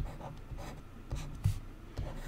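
Handwriting strokes on a tablet screen: a few short scratches and taps as numbers are written with a stylus, the sharpest about a second and a half in.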